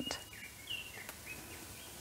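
Rainforest birds calling: a few short whistled notes, some sliding slightly in pitch, in the first second and a half over a faint steady hiss of the bush.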